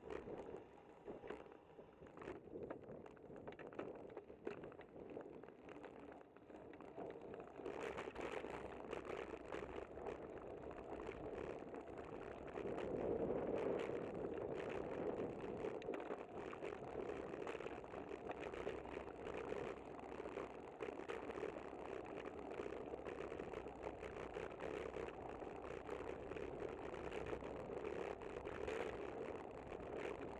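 Road and wind noise of a bicycle riding along a city street, picked up by a camera mounted on the bike. There is a steady rushing with many small rattles and clicks, and it grows louder about a quarter of the way in and again near the middle.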